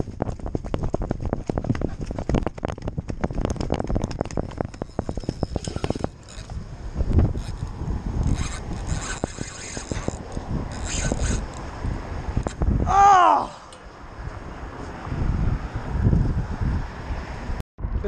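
Spinning reel and rod rattling and scraping as a hooked yellowtail snapper is reeled up to a bridge, with wind on the microphone. A short cry that rises and falls in pitch comes about two-thirds of the way in.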